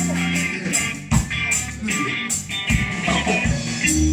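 Live band playing: electric guitar and electric bass over a drum kit keeping a steady beat with cymbal hits.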